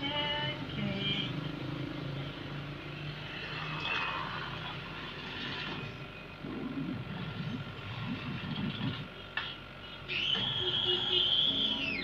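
Animated film's soundtrack playing through a CRT television's speaker: brief dialogue at the start, then mixed effects sounds with low rumbling, and a steady high-pitched tone for the last two seconds.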